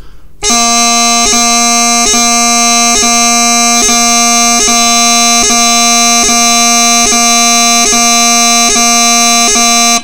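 Highland bagpipe practice chanter holding a steady low A, broken about once every 0.8 seconds by a quick G gracenote from the top-hand G finger. These are slow, rhythmic repeats marking the start of each new A. The note starts about half a second in.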